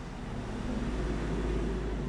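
A vehicle engine running as a low rumble that grows louder over the first second and a half, then holds steady.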